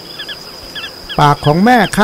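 Small pratincole giving short, high chirps, often two in quick succession: a parent calling to its chicks while carrying food. A faint steady high whine runs underneath, and a man's voice starts speaking about a second in.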